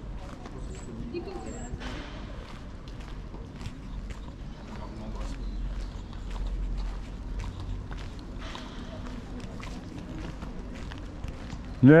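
Footsteps of a person walking on a paved street, a run of faint regular ticks over a low steady rumble.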